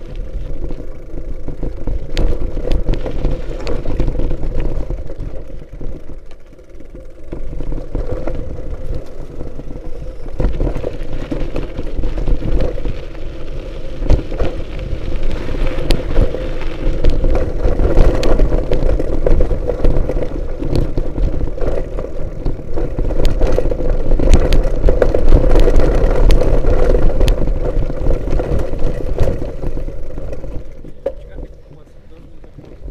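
Wind buffeting the microphone of a moving action camera, with scattered rattling clicks and a steady low drone as it travels over a gravel dirt track.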